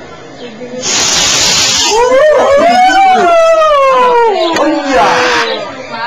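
Amateur solid rocket motor launching: a sudden loud hiss starts about a second in and lasts about a second. Then a person's long whoop rises and falls in pitch over about three seconds, with another short burst of hiss near the end.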